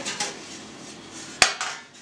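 Stainless steel container lid set down with a single sharp metallic clank about a second and a half in, ringing briefly.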